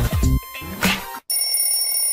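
End-screen sound effects over music: a few heavy beats with sweeping swooshes, then, after a brief break just past a second in, a steady high electronic ringing, a notification-bell effect for a subscribe animation.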